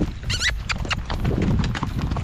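Horses' hooves clip-clopping at a walk on a dirt road, with a brief high, wavering call near the start.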